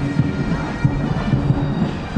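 Military pipes, brass and drums playing together: bagpipes and brass over beats of bass and snare drums.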